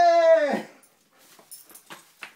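Dog giving one short whine, holding a steady pitch for about half a second and then dropping off at the end.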